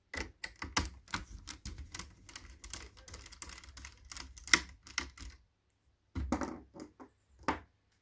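A small precision screwdriver clicking and scraping on a screw and the plastic and metal frame of a ThinkPad T61 laptop as it is undone. Quick, irregular clicks and taps run for about five seconds, stop briefly, then a few more come near the end.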